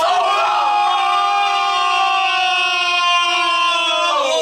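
A man's loud, long yell of excitement, one voice held on a single high pitch for about five seconds and dropping in pitch as it trails off at the end.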